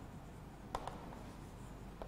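Chalk writing on a chalkboard: faint strokes with two sharp chalk taps in quick succession about three-quarters of a second in.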